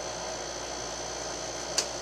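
Steady hum and hiss of a window air conditioner running in a small room, with a short click near the end.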